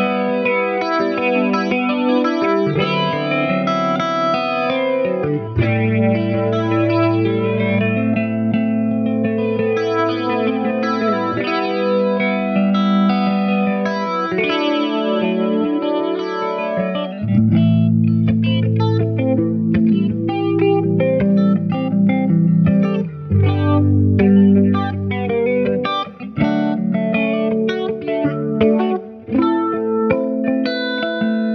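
Semi-hollow electric guitar playing an improvised jam: ringing chords and melody notes with long held low notes beneath. The sound thins out briefly a few times near the end.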